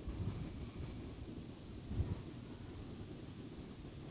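Faint, uneven low rumble of wind on the microphone, with one brief low bump about two seconds in.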